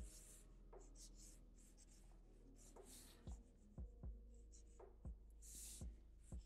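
Black felt-tip marker drawing quick, short strokes on paper: faint scratching, stroke after stroke, with a few soft thumps in the second half.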